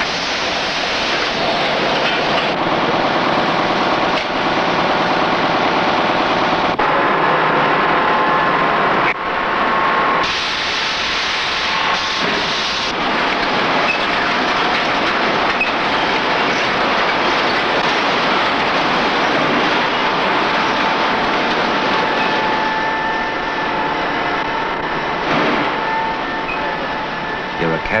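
Machinery of an automated newspaper plant running: a loud, steady mechanical noise from conveyors and bundling machines, with faint steady tones. It changes abruptly in character several times.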